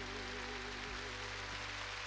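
Studio orchestra with grand piano holding the song's final sustained chord, one vibrato note wavering through it. The chord thins out near the end as a hiss of noise rises.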